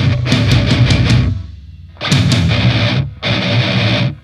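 Deathcore band playing a stop-start riff on heavily distorted electric guitars, bass and drums, without vocals. The band cuts out for about half a second a little over a second in, then comes back in with short breaks, the last one near the end.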